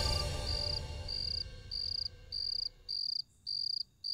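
Cricket chirping in an even series of short high-pitched pulses, about two a second, while music fades out over the first second or so.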